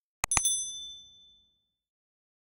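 Subscribe-button animation sound effect: two quick mouse clicks, then a single bright bell ding that rings out and fades over about a second and a half.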